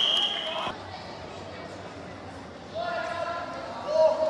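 A referee's whistle blast, one steady shrill note that cuts off sharply under a second in, blowing the play dead. Voices shout out across the field near the end.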